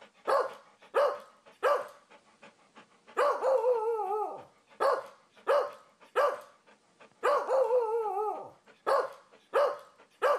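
A dog barking in a repeating pattern: three short sharp barks, then a long wavering cry that falls in pitch, and the cycle repeats about every four seconds.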